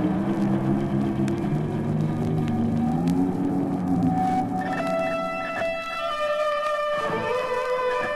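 Early-1970s rock recording played from vinyl, with electric guitar: held low notes give way about halfway through to higher held notes, some of them sliding in pitch.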